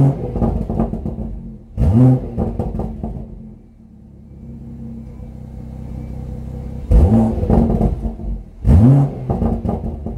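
BMW M140i's turbocharged straight-six, revved at a standstill through its M Performance exhaust in Sport mode. There are quick throttle blips right at the start, about two seconds in, about seven seconds in and about nine seconds in, each rising sharply and dropping back. Between the second and third blips the engine settles to a quieter, steady idle.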